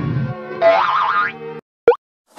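Orchestral cartoon-style music with a rising comic sound-effect glide over it. The music cuts off suddenly about a second and a half in, and a brief, sharp sound effect comes just before the end.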